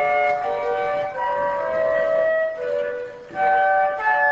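A trio of flutes playing together in harmony, several sustained notes sounding at once and changing pitch. There is a brief break about three seconds in before they come back in.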